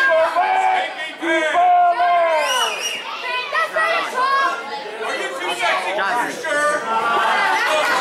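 Several voices shouting and calling out over crowd chatter in a large hall, with loud, high-pitched, drawn-out yells.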